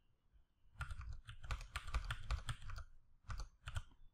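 Computer keyboard typing as numbers are keyed into form fields: a quick run of keystrokes, then a few more near the end.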